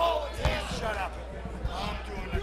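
Raised, excited voices of onlookers, with a couple of dull thumps, about half a second in and again near the end, over a steady low hum.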